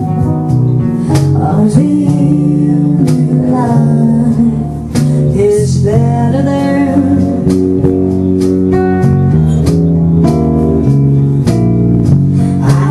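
Live band playing a blues song on acoustic guitar, bass guitar and hand drums, with a woman singing.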